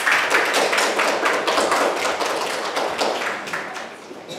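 Many hands clapping in quick, irregular applause, dying down toward the end.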